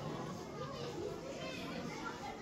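Indistinct chatter of several people talking at once, children's voices among them, steady throughout with no single clear speaker.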